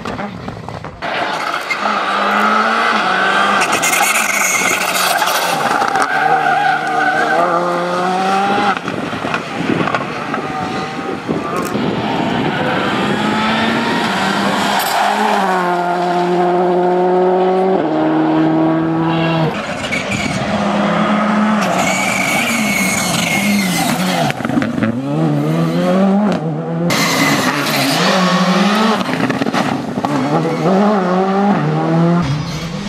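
Škoda Fabia R5 rally car's turbocharged four-cylinder engine, revved hard at speed, its pitch climbing and dropping sharply with gear changes, over several separate passes.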